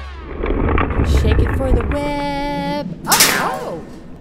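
Cartoon transition sound effects: a low rumbling crash with crackle as the picture breaks apart, then a short held tone about halfway through. Near the end comes a quick bright swish with a sliding, voice-like sound.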